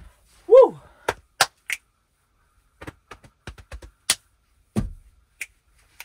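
A short high voice-like whoop that rises and falls, then a scattering of sharp clicks and knocks, irregularly spaced, with a dull thump near the end.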